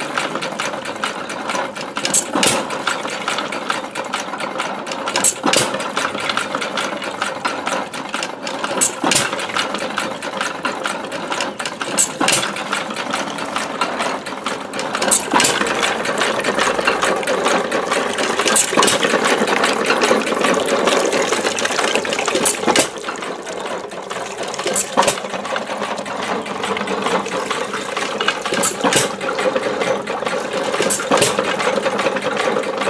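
1918 Baker Monitor 1¼ hp upright hit-and-miss engine running a Beatty water pump. A sharp bang comes every three seconds or so as it fires, over the steady clatter of the pump gearing and pump stroke. Water splashes from the pump spout into a metal bucket.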